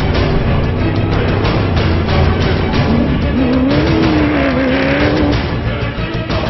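Off-road rally vehicle engine revving, its pitch rising and wavering for a couple of seconds past the middle, mixed with a pulsing music soundtrack.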